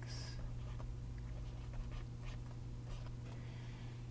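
Stylus scratching faintly on a tablet screen in short pen strokes while handwriting, over a steady low hum.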